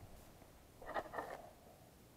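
Mostly quiet, with a brief cluster of faint clicks and rustles about a second in, from a small object being handled.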